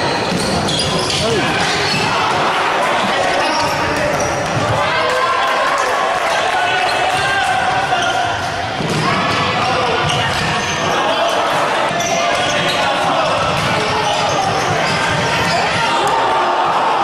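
Live futsal in a sports hall: players shouting and spectators' voices echoing, with the thuds of the ball being kicked and bounced on the wooden floor throughout.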